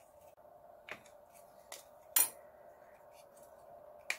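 A few scattered light clicks and taps of hard plastic parts of a Dyson DC23 turbine head being handled and fitted together, the sharpest about two seconds in, over a faint steady hum.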